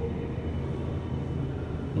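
Steady low hum of room tone in a tiled toilet stall, with no distinct event.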